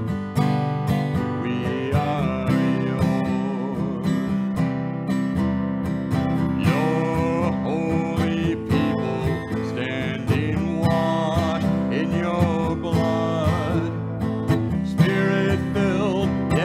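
Acoustic guitar strummed steadily, accompanying a congregation singing a hymn.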